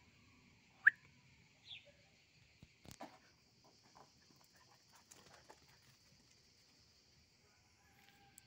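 A steady, faint, high buzz of insects, with one short, sharp, high chirp about a second in and a fainter one shortly after. A few light clicks and rustles come around three seconds in.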